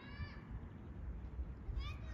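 Faint meowing of a cat: a drawn-out, high-pitched call that ends just after the start, then another meow near the end.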